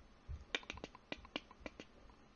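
A quick, irregular run of about eight sharp clicks from a computer's input controls being worked at the desk.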